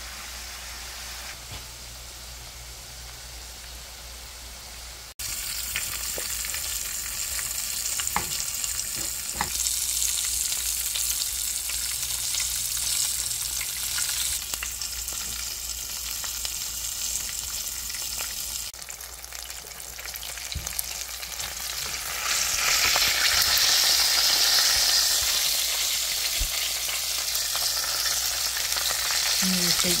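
Food sizzling in hot oil: chicken wings frying in a pot and, in the middle, a sauce frying in a small cast-iron skillet as it is stirred with a wooden spatula. A steady sizzling hiss that jumps louder or quieter in sudden steps a few times, with a few sharp clicks of the utensil against the pan about eight to nine seconds in.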